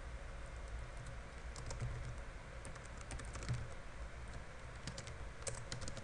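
Computer keyboard typing: scattered key clicks in short runs, with brief pauses between them.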